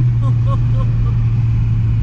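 Audi 1.8T turbocharged four-cylinder engine under way in the next gear after a short-shifted upshift, giving one steady low engine note.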